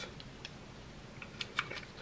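A few faint, scattered light clicks from a Byrna pistol's plastic magazine and round kinetic projectiles being handled as the magazine is readied for loading.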